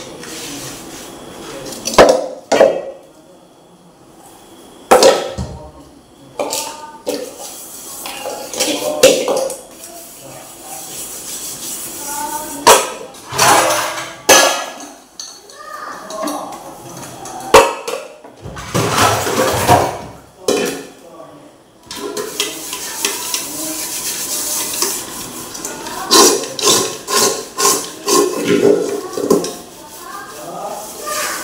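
Metal pots, an iron wok and metal plates clattering and knocking against each other as they are washed and stacked by hand, with water running over the last third.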